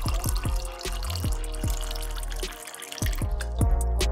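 Background music with a steady beat of deep bass drums. Under it, juice pours in a stream into a glass, a splashing hiss that stops about three seconds in.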